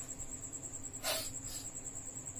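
An insect's steady, high-pitched pulsing trill, with a short hiss about halfway through.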